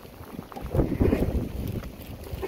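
Wind rumbling on the microphone, swelling about half a second in and easing off near the end.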